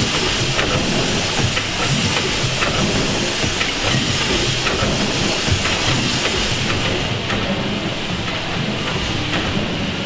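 James Kay steam engine running, with a steady steam hiss over the clatter and clicks of its moving rods and valve gear. The highest part of the hiss fades about seven seconds in, leaving mostly the mechanical clatter.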